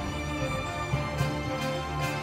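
Symphony orchestra playing sustained chords over a steady low bass pulse, with two brief crisp hits in the second half.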